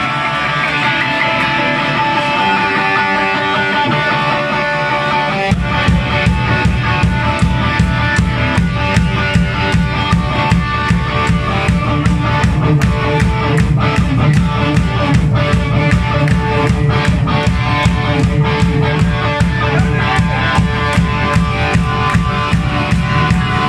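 Live punk rock band playing through a small PA: electric guitar alone at first, then drums and bass come in at full tempo about five seconds in and the band drives on together.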